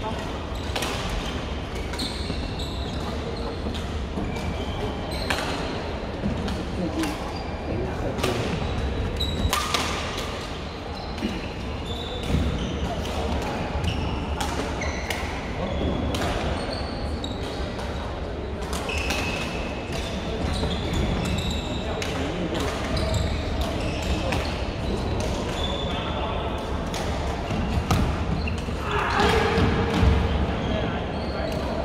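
Badminton play on an indoor court in a large, echoing sports hall: rackets striking the shuttlecock in sharp clicks, and sneakers squeaking on the court floor in many short, high squeals, over indistinct chatter from the surrounding courts.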